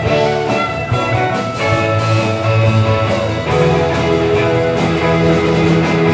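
Live rock band playing an instrumental passage: electric guitars, electric bass, keyboards and drums, with no vocals.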